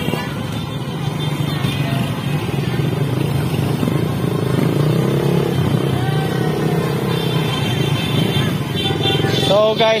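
Motorcycle engine running steadily at cruising speed, heard from on the bike, with the engines of other motorcycles riding in a group alongside.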